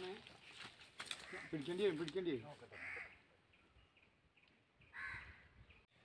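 A crow cawing twice, short harsh calls about three seconds in and again near the end.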